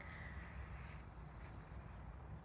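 Quiet outdoor background: a faint, unsteady low rumble with no distinct events.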